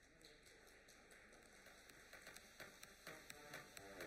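Faint, scattered clapping from an audience, irregular claps over a light haze.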